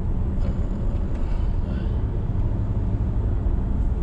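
Steady low rumble of road and tyre noise inside a moving Volvo car's cabin.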